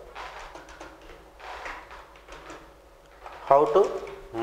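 Faint, irregular clicks of a computer keyboard and mouse while text is typed.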